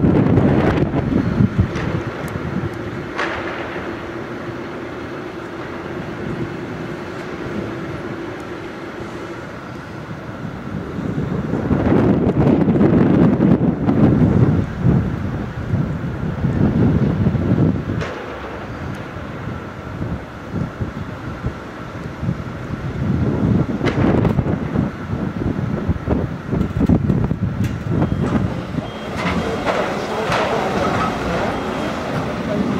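Construction-site noise of heavy machinery running, with wind gusting on the microphone in swells and a few sharp metallic knocks.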